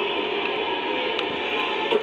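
Steady, even arena crowd noise from a basketball broadcast, played through a television speaker and re-recorded by a phone, so it comes across as a flat, hissy din.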